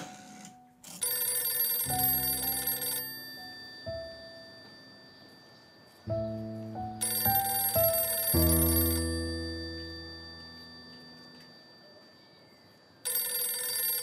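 Green rotary desk telephone's bell ringing in repeated bursts of about two seconds, three rings spaced about six seconds apart, over slow, sparse music notes.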